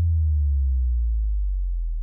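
A deep electronic bass hit under the programme's title card: a very low tone that starts suddenly and fades slowly.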